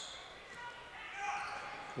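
Faint basketball-game sound in a school gym: echoing crowd voices and a basketball being dribbled on the court.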